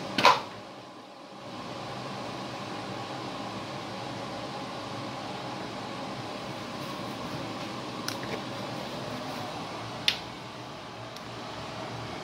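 A sharp plastic snap as the fridge's evaporating drip tray is pulled free of its mount on the compressor, followed by a steady mechanical hum and two light plastic clicks about eight and ten seconds in as the tray is handled.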